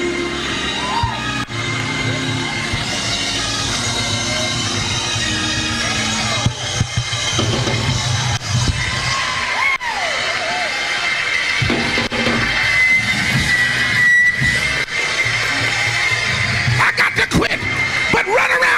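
Church praise-break music: a gospel band with drums and sustained keyboard chords, with the congregation shouting and cheering over it.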